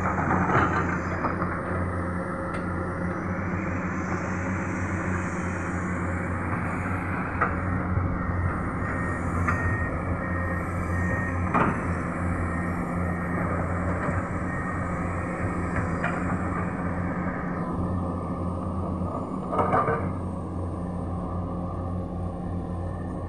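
Diesel engines of several Komatsu hydraulic excavators running in a steady low rumble while they dig, with a few sharp metallic knocks from the working machines scattered through it.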